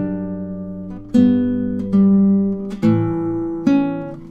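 Nylon-string classical guitar playing a slow phrase of two-voice chords in tenths: five plucked attacks, each left to ring and fade before the next.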